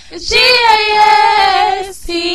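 A single high singing voice, unaccompanied, holding one long note with a slight waver from about a third of a second in until just before the end.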